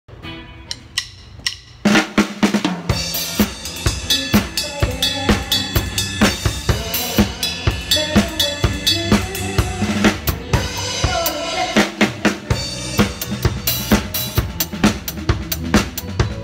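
Acoustic drum kit played with sticks: a few light clicks, then about two seconds in the full kit comes in with a steady groove of bass drum, snare and cymbal strokes.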